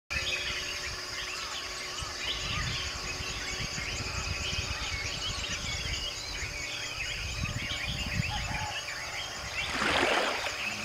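Outdoor ambience of many small birds chirping and calling at once over a low rumble. A rushing noise swells briefly near the end.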